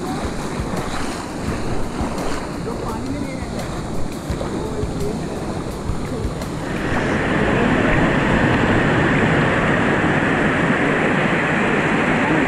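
Water rushing down a small rock cascade into a pool. It is a steady rush that swells louder and fuller about seven seconds in, with wind buffeting the microphone before that.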